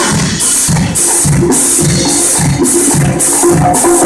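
Percussion ensemble playing a Latin groove: short repeated tuba bass notes under an even shaker rhythm of about two to three strokes a second.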